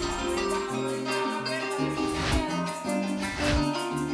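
Instrumental Venezuelan llanera music: harp and cuatro playing over a bass line, kept in rhythm by maracas.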